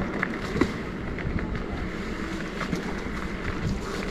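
Fat tires of an Emmo OXE e-bike rolling steadily over wet, slushy pavement, with wind rushing over the handlebar microphone and a few faint ticks scattered through.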